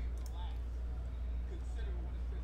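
Faint, brief fragments of a man's voice over a steady low hum.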